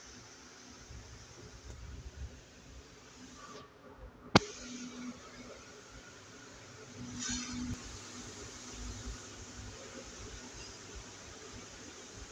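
Paternoster lift cabin travelling between floors: a faint low rumble of the moving cabin and chain drive, with one sharp click about four seconds in and a brief rustling hiss about seven seconds in.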